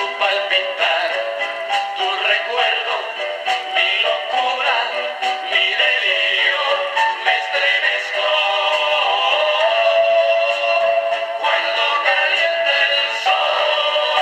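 A 1960s vinyl record playing through a Penny Borsetta portable record player's small built-in speaker: a Latin pop song with male voices singing over a band. The sound is thin, with no bass.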